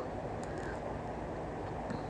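Steady, low outdoor background rumble with no distinct event standing out.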